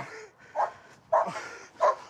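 A dog barking three times, short separate barks about half a second apart.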